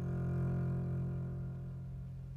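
Acoustic double bass played with the bow, holding one low note that slowly fades.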